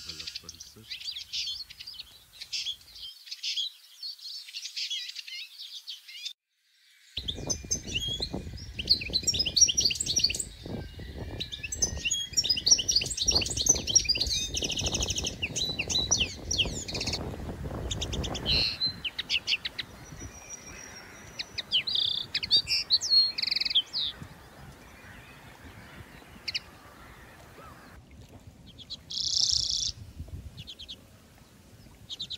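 Small birds chirping, in quick runs of short calls throughout. From about seven seconds in until about nineteen seconds, a low rumbling noise runs under the calls. A loud burst of chirps comes near the end.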